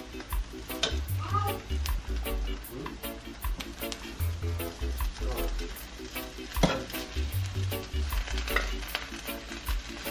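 Metal spoon scraping and clinking as cooked rice is scooped from a hot pan and piled onto a china plate, with a few sharp clinks. Background music with a steady beat plays underneath.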